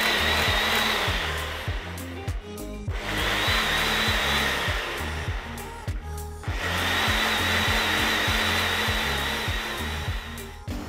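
Ninja personal blender running in three pulses of a few seconds each, its motor giving a steady high whine as it blends almond milk, oats, chia seeds and blueberries into a smooth mix.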